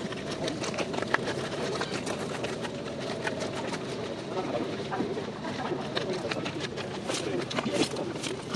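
Outdoor ambience of several people talking indistinctly, with birds calling in the background.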